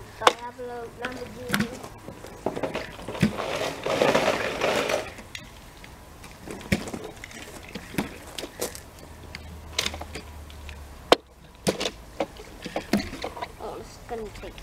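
Plastic water bottle being flipped and landing on grass again and again: a string of sharp knocks at irregular intervals. A loud burst of rushing noise about a third of the way in lasts a second or two.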